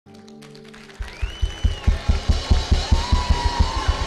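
Church band music: after a quiet held chord, a drum kit comes in about a second in with a fast, steady beat of about five to six hits a second, with a sliding melodic tone over it.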